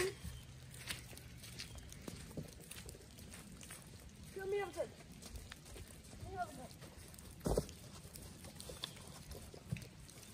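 Faint, distant shouts from a child, twice (about four and a half and six and a half seconds in), over a quiet background of scattered small clicks, with one sharp knock about seven and a half seconds in.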